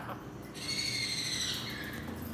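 A pet parrot gives one long, high call that dips slightly in pitch at the end.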